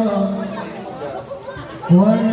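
A marawis lead vocalist's held sung note fading out, a softer lull filled with talking voices, then the next sung phrase starting abruptly and loudly right at the end.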